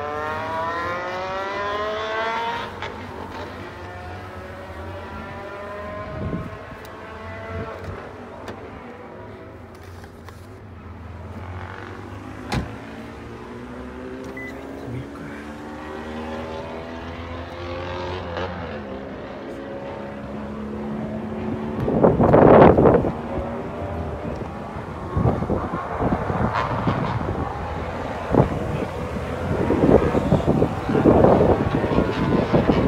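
Engines of vehicles accelerating on a nearby road, the pitch rising through the gears in the first few seconds and again in rising runs through the middle. About two-thirds of the way in comes a loud rustling burst close to the microphone, then footsteps and handling noise.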